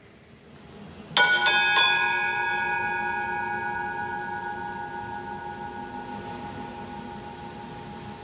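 A consecration bell struck three times in quick succession about a second in, then ringing on and slowly fading: it marks the elevation of the consecrated host.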